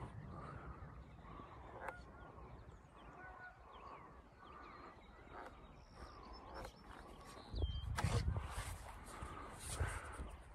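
Faint, repeated calls of distant birds. A louder low rumble on the microphone comes in about three-quarters of the way through.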